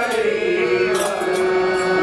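Live devotional song (bhajan): group singing over a harmonium, with a long held note, and hand drums and sharp, bright percussion strikes keeping the beat.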